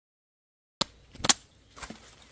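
A short dead silence, then three sharp snaps: dry bamboo shoots and stalks cracking as they are handled. The loudest snap comes about midway.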